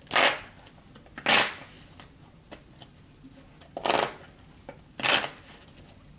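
A tarot deck being shuffled by hand: four short bursts of cards rustling against each other, with a longer pause between the second and third.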